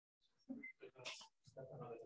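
Quiet room with a few faint, short vocal sounds, then a man's voice starting to speak near the end.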